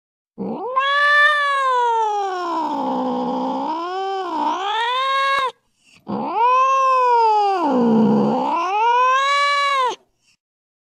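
Cat caterwauling in a fight: two long yowls, each about five seconds, with a brief break between them. In each, the pitch sags low in the middle and rises again.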